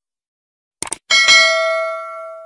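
Subscribe-button animation sound effect: a quick double click, then a bright notification-bell ding about a second in that rings on and slowly fades.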